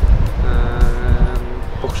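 A loud low rumble, with a held chord of background music sounding over it for about a second in the middle.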